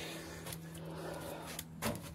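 Faint handling and rustling noise over a low steady hum, with one soft knock near the end.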